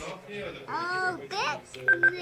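A high-pitched voice making two short sounds that rise and fall in pitch, followed by a brief beep near the end.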